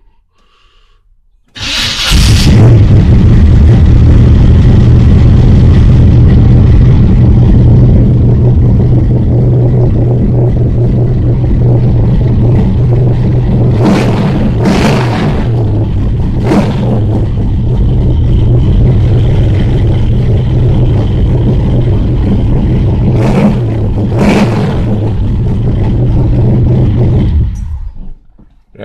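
1970 Chevrolet Chevelle's carbureted engine starting up about two seconds in, then running at a loud, steady cold-start fast idle on the choke, which the owner finds a little high. A few short sharp noises sound over it in the middle, and the sound drops away just before the end.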